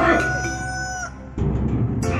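A rooster crowing once, a single held call of about a second that stops abruptly, over background music with a heavy bass.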